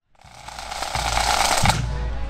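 Pipe band music, bagpipes with drums, fading in from silence over about the first second.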